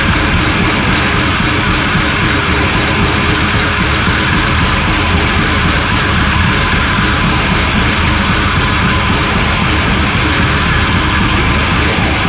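Loud, dense improvised experimental rock, playing without a break and recorded on four-track tape.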